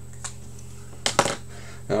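A faint click, then a short cluster of sharp clicks and taps about a second in: trading cards and their hard plastic holders being handled on a table.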